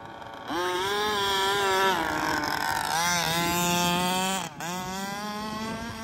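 A 1/5-scale RC car's 30.5cc full-mod Zenoah two-stroke engine, loud through a DDM Dominator expansion pipe. About half a second in it revs hard and holds high revs, dips and climbs again around three seconds, then drops off sharply after four and a half seconds and runs on quieter.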